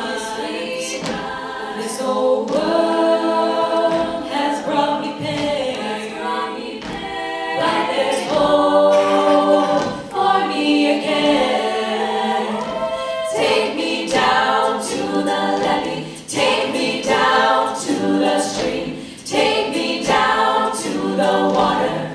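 All-female a cappella group singing in close multi-part harmony, with sharp percussive hits recurring through it, typical of vocal percussion.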